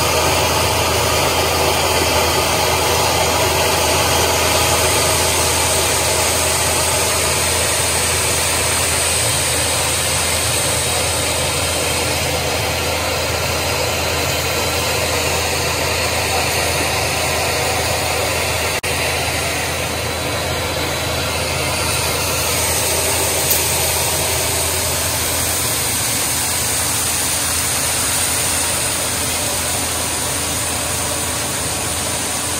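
Grain vac running steadily, with a loud rushing hiss of air and an engine hum underneath, as its nozzle draws shelled corn up the hose. The high hiss eases for several seconds in the middle, then comes back.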